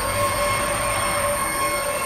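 Cinematic logo-intro sound design: steady, shrill high tones held over a faint hiss, with little bass beneath them.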